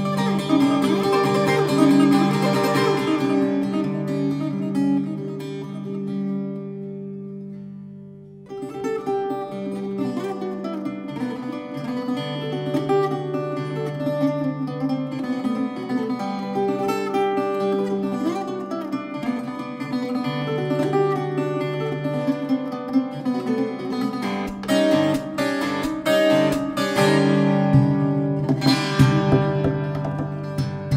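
Instrumental orchestral music led by a plucked Brazilian viola (ten-string folk guitar), its picked melody set over sustained low notes. The music thins to a brief lull about seven to eight seconds in, then the plucked line returns.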